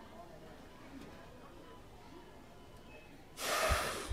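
Quiet room tone, then near the end a loud, short breath drawn in close to the microphone.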